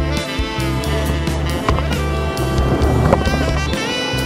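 Background music with a steady beat, a repeating bass line and sustained chords above.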